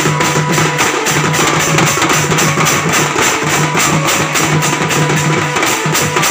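A children's percussion band playing: stick-beaten drums and steel pot lids clashed together like cymbals, in a fast, steady, driving beat.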